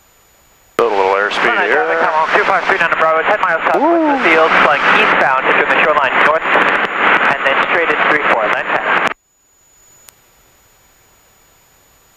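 A voice coming over the aircraft radio, thin-sounding and cut off sharply, starting about a second in and lasting about eight seconds.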